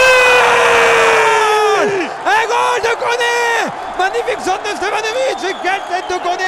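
A man's excited yell celebrating a goal: one long held call of about two seconds that sags in pitch at its end, a second long call, then shorter shouts.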